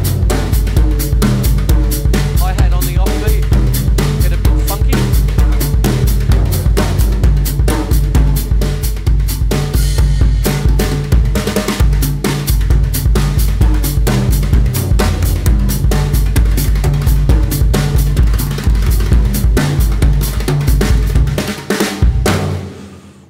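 Drum kit played by hand with rod-type brush sticks: fast, melodic patterns around tom-toms tuned to a scale, mixed with cymbal strokes and worked into double-stroke rolls. It stops shortly before the end.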